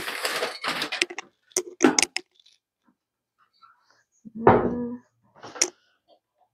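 Plant pots being rummaged through in a pile and lifted out: a rustle, then scattered knocks and clatters, with a louder clatter that rings briefly about four and a half seconds in.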